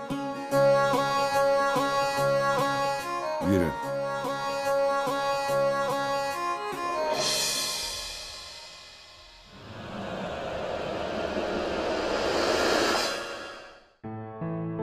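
Background music from a television drama score: sustained string-like tones over a regular beat. About seven seconds in it gives way to two swelling rushes of sound, the second building until it cuts off suddenly at the end.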